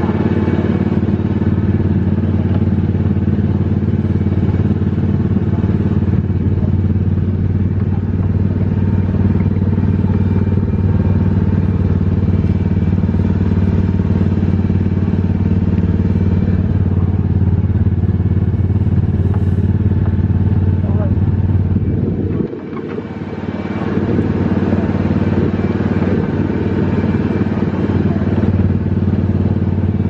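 Small petrol engine of an Autopia ride car running steadily with a low drone. About two-thirds of the way through, the engine sound drops away suddenly and then builds back up over a second or two.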